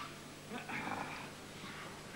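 Indistinct short shouts and voices in a wrestling hall, over a steady low hum.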